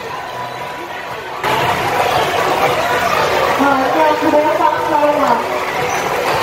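An announcer's voice over a loudspeaker, calling out customers' names to take their tables. It starts suddenly about a second and a half in, with some words drawn out.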